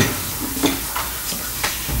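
Steady hiss of room tone and recording noise in a pause between a man's words, with a faint short sound about half a second in.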